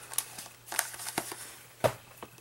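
Rustling and a few light clicks and knocks as items are handled and rummaged through in a handbag, with the sharpest knock near the end.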